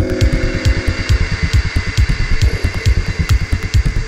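Electronic dance music played in a psytrance DJ set: a fast rolling bass line pulsing under steady ticking hi-hats.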